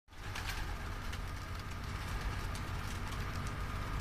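Pigeons' wings flapping in a loft, with a few sharp wing claps in the first two seconds, over a steady low rumble.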